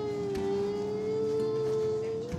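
A young girl crying, one long steady wail held on a single pitch.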